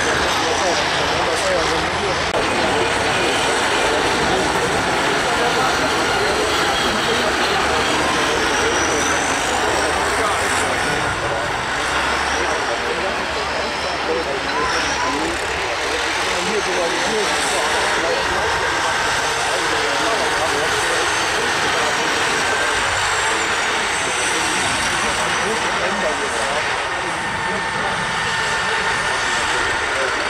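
Several stripped-down combine harvesters racing over a dirt track, their diesel engines running hard. The engine noise is loud and steady, with no break.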